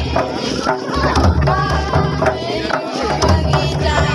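Folk drumming on a mandar, the two-headed barrel drum played by hand, with voices singing over it.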